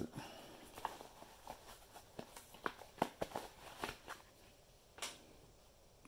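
Faint, irregular clicks and rustles of hands handling a ball cap and pulling its hard plastic insert out from inside it.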